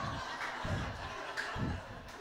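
Small club audience laughing after a punchline, a diffuse spread of chuckles that dies down toward the end.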